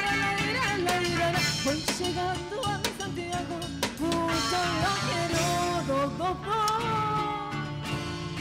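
Live band playing folk music for a dance: guitars and a drum kit keep a steady beat under a gliding melody line.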